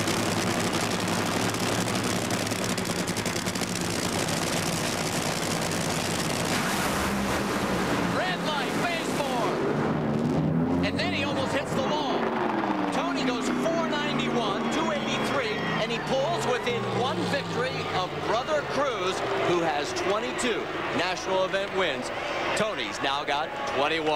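Two supercharged nitromethane Funny Car engines run at full throttle down the drag strip, a loud, dense roar through the first nine seconds or so. Then the roar falls away, and the engine pitch slides down as the cars shut off and coast, under crowd noise and voices.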